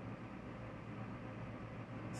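Steady low hum with a faint hiss: quiet background room noise with no distinct event.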